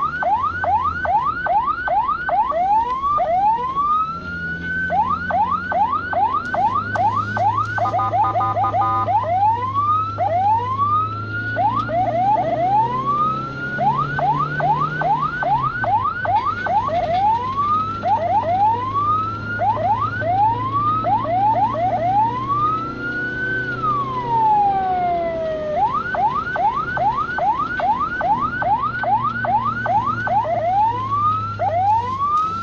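Ambulance electronic siren sounding without a break. It switches between a fast yelp of rapid rising sweeps, several a second, and slower single rising sweeps, with one long rise and fall a little past the middle. A steady horn blast of about a second comes about eight seconds in, and a low engine drone runs underneath.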